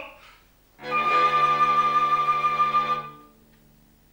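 Small instrumental ensemble playing one steady held chord for about two and a half seconds, entering after a short silence and then stopping. It is the closing chord of the number.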